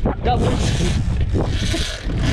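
A man shouts "Doubles!" and laughs excitedly, over a constant low rumble of strong wind buffeting the microphone.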